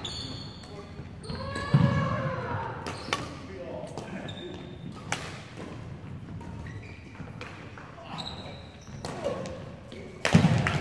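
Badminton rally: irregular sharp hits of rackets on the shuttlecock and thuds of players' footwork on a wooden court, echoing in a large sports hall.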